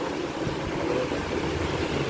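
Steady low background rumble with a few faint knocks, with no clear voice or tune over it.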